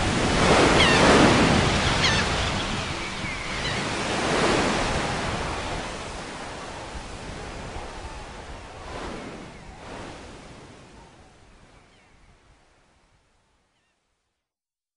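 Ocean surf: waves washing in and drawing back in a few slow swells, fading out gradually to silence near the end.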